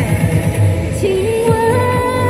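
Instrumental interlude of a Mandarin pop backing track with a steady beat and a held melody line that moves to a new note about a second in.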